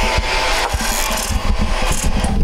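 Rubbing and scraping handling noise on the microphone as the camera is moved by hand, with a faint steady tone and a few low knocks underneath. It stops just after the camera settles.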